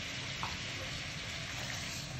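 Chicken pieces with ginger-garlic paste sizzling in hot ghee in a nonstick pan: a steady hiss.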